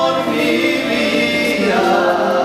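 A choir singing, holding long notes, with the chord shifting near the end.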